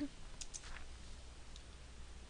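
Two faint clicks about half a second in and a fainter one later, as a password dialog is confirmed on the computer, over quiet room tone.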